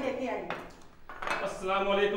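Crockery clinking: a glass and a dish handled and set down on a glass-topped table, with a couple of sharp clinks in the first second.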